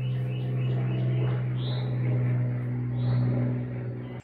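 A steady low hum with a stack of overtones, holding one pitch throughout, with two faint high chirps from birds partway through.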